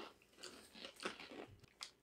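Several faint, short crunches of people chewing a dry, crunchy snack of chickpeas and croutons.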